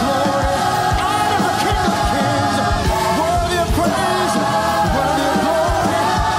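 Upbeat live gospel praise music: a choir and lead vocalists singing together over a band, with a steady drum beat about twice a second.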